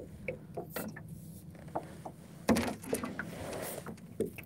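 Handling noise from fishing tackle: irregular small clicks and knocks as the rod, reel and float line are adjusted. The loudest knock comes about two and a half seconds in, followed by about a second of rustling.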